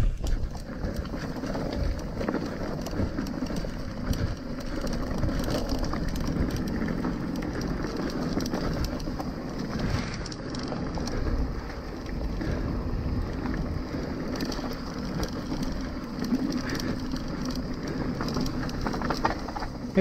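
Mountain bike rolling down a rocky dirt trail: steady tyre crunch on gravel and stones with constant small rattles and ticks from the bike.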